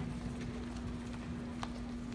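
Large arena's room tone: a steady low hum, with a few scattered light taps and clacks from footsteps and equipment being handled on the floor.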